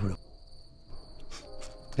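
Crickets trilling steadily in a high, continuous tone.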